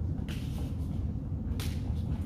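Two short, sharp swishes about a second apart: a martial arts uniform snapping as the student performs strikes. A steady low rumble runs underneath.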